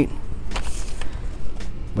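Handling noise from a boxed action figure being lifted off a store peg: rustling cardboard-and-plastic blister packaging with a few light knocks, over a steady low rumble.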